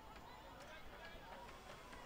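Faint, distant voices of footballers calling out across an open pitch, over low outdoor background noise.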